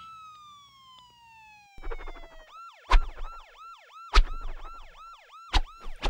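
Cartoon sound effects: a long falling tone that slides down over about two and a half seconds, then a siren yelping up and down about three times a second, broken by three heavy thumps.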